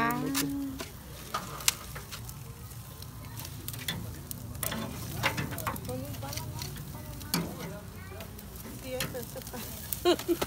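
Meat sizzling on a grill grate over wood embers, a steady sizzle with scattered sharp pops and clicks as the coals are stirred with metal tongs.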